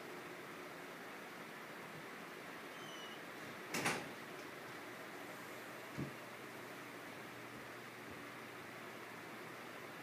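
Steady faint hiss of a running electric fan in a room, with a short clatter about four seconds in and a smaller thump about two seconds later from out of view.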